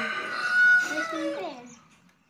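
A rooster crowing: one drawn-out call, held steady and then falling away about a second and a half in.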